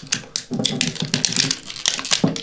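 Fingers and nails picking and tearing at the seal over a bourbon bottle's cork, a quick, uneven run of small clicks and crackles. The tear-off strip has failed, so the seal is being picked off by hand.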